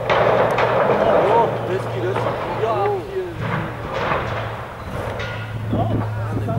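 A sudden thump right at the start, then several voices shouting over one another for a few seconds as play surges in front of the goal.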